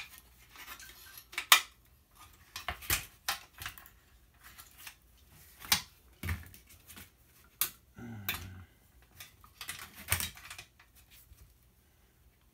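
Irregular sharp metallic clicks and clinks: hand tools and the sheet-metal chassis of a monitor being dismantled are picked up, set down and worked on.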